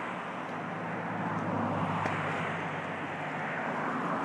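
Steady rush of turbulent, swirling stream water, with a low steady rumble beneath it.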